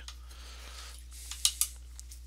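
A few sharp clicks and clinks of paintbrush handles knocking against the palette and the other brushes, about one and a half seconds in, the loudest two close together.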